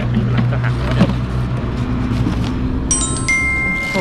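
Plastic water bottles knocking and crinkling as they are pushed into a motorcycle's hard top case, over a steady low hum. About three seconds in, a bright chiming sound effect of several held bell-like tones starts abruptly.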